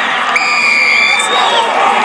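Stadium crowd cheering a try just scored. About a third of a second in, a whistle sounds one steady blast of just under a second, the referee awarding the try.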